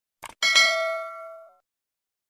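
Subscribe-button sound effect: a short mouse click, then a bright bell ding with several tones that rings out over about a second, for the notification bell.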